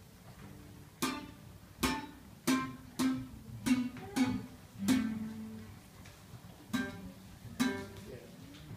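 Nylon-string classical guitar played slowly and unevenly: about nine strummed chords, each ringing briefly, with a longer pause after the fifth second.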